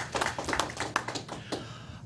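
Brief scattered applause from a small group of people, a run of quick irregular claps that thins out and fades near the end.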